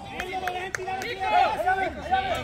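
Several men's voices calling and shouting over one another across a football pitch, softer than a close voice, with a few faint knocks early on.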